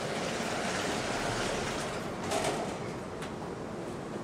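Sliding classroom blackboard panels being moved along their runners: a steady rumbling scrape, loudest about two and a half seconds in.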